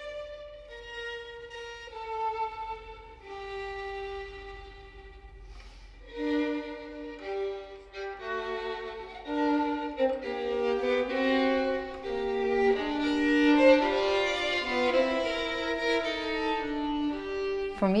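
Solo violin playing a slow melody: single held notes at first, then from about six seconds in a fuller passage, often two notes at once, growing louder toward the end.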